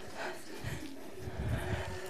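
Faint, soft low thuds and rustling of body movement as a kettlebell is cleaned and pressed overhead.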